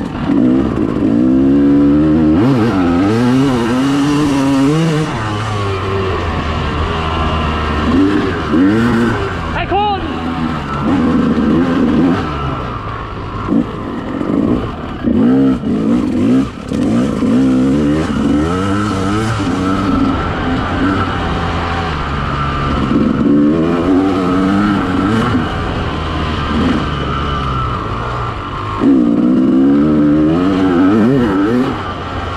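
Dirt bike engine heard from on the bike, revving up and falling back again and again as the rider accelerates, shifts and rolls off through the course.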